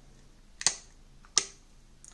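Two sharp clicks, about three-quarters of a second apart, as a clear silicone case is pressed and snapped onto the edges of a smartphone.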